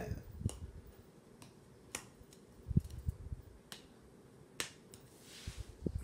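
Scattered faint clicks and taps, with one low thump nearly three seconds in, then a soft breath drawn in near the end.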